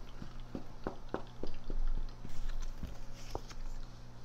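Tarot cards being shuffled and handled by hand: a run of short card taps and slaps, about six in the first two seconds and a few more later, over a steady low hum.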